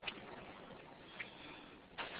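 Faint steady hiss with a small click right at the start and another faint tick a little over a second in.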